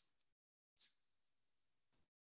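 A mostly quiet pause with a thin, faint high-pitched tone and a few brief high chirps. The loudest chirp comes right at the start and another just under a second in.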